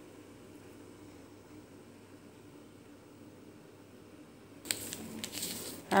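Faint steady background noise, then about five seconds in, a short crinkling rustle of a plastic seasoning sachet being handled over the pot.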